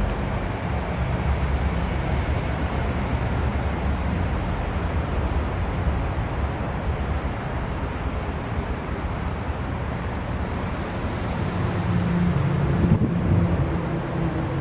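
Wind buffeting the camera microphone outdoors: a steady, rumbling noise, heaviest in the low end.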